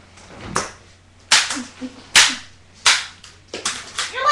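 Metal crutches clashing against each other: five sharp knocks, each less than a second after the last.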